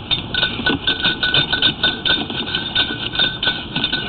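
Rapid, irregular clicking and clinking, several knocks a second, over a steady thin hum, from a sewer push-camera inspection rig as the camera head is worked in the pipe.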